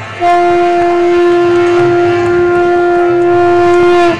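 A conch shell (shankha) blown in one long, steady note, starting just after the start and held for about four seconds before cutting off.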